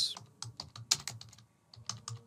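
Typing on a computer keyboard: a quick, irregular run of key clicks as a line of text is entered.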